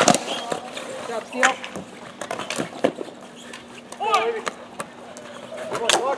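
Hockey sticks and ball clacking in a ball-hockey game on a plastic sport-court surface: a run of short, sharp knocks. A player's shout comes about four seconds in.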